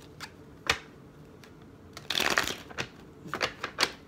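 A miniature tarot deck being shuffled: scattered sharp card snaps, with a denser run of card noise lasting about half a second around the middle and a quick string of snaps near the end.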